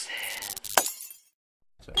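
Logo sting sound effect: a noisy swish with a sharp crash about three-quarters of a second in, after which it cuts off.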